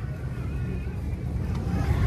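Low, steady rumble of outdoor background noise, swelling toward the end, with faint wavering tones above it.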